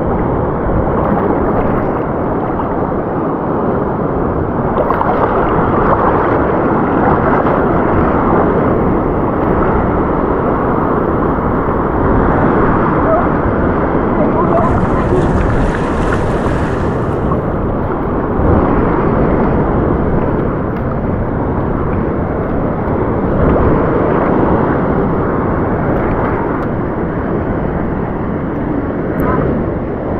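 Wind buffeting a body-worn action-camera microphone, heard over shallow water and surf washing around reef rocks. About halfway through, a hissier wash lasting a couple of seconds passes, like a wave spilling across the rocks.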